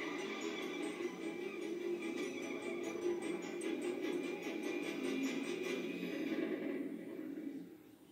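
Music from a TV drama's soundtrack playing through a television's speakers, sustained and steady, then fading out near the end.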